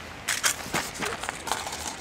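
Aluminium foil crinkling and crackling in short bursts as it is pressed down over a pot on a wood-burning camp stove.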